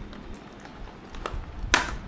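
Clear plastic packaging tray crackling and clicking as a model is handled and lifted out of it, with a louder crackle near the end.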